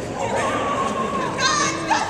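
Young women's voices calling and shouting during a dodgeball game, with one louder, higher shout about one and a half seconds in, in a large echoing gym hall.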